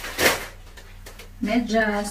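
A short handling noise, a brief rustle or knock, about a quarter second in as a packaged item is picked up. A woman starts speaking near the end.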